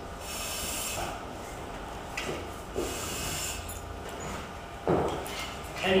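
A firefighter's turnout gear and SCBA harness rustling and rubbing as he refastens the straps and moves, with a short knock about five seconds in.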